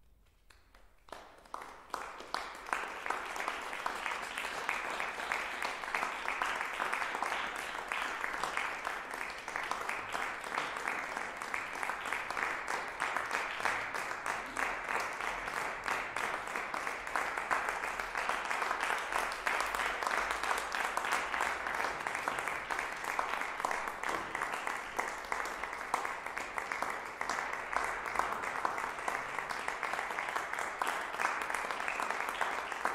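Audience applauding: clapping starts about a second in and swells within a couple of seconds into steady, dense applause.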